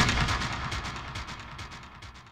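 Channel logo sound effect: one loud hit at the start, followed by a fast train of echoing repeats, about ten a second, fading away.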